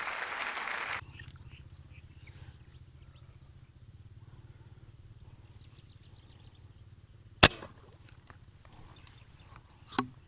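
A small tilapia flopping in grass and water hyacinth, a dense rustling that cuts off abruptly about a second in. After that, a low steady rumble with faint handling noises, and one loud sharp knock about seven and a half seconds in.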